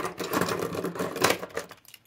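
A bunch of fountain pens with clear plastic barrels clicking and clattering against each other and the table as they are scooped up by hand: a quick, dense run of small clicks that dies away near the end.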